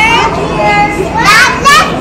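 Young children's high-pitched voices chattering and calling out, loudest near the end.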